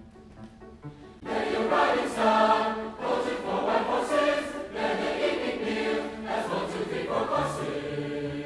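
A mixed choir singing an arranged American folk song, soft for the first second and then entering loudly, in phrases with brief breaks.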